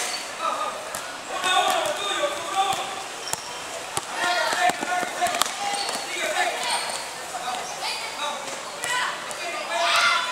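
A basketball bouncing on a hard court as it is dribbled, with a run of sharp bounces around the middle, over children's and spectators' voices.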